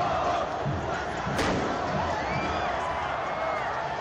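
Steady hubbub of spectators and players shouting around an outdoor football pitch, with faint distant calls. A single sharp thump, such as a ball being struck, comes about a second and a half in.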